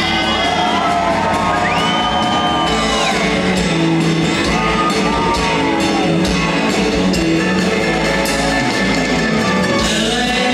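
Live sertanejo music: a male singer holds long, gliding sung notes over the full band, with shouts and whoops from the crowd.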